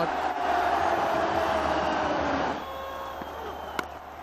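Cricket stadium crowd cheering loudly after a big hit, dropping away to a quieter murmur about two and a half seconds in. A single sharp click near the end.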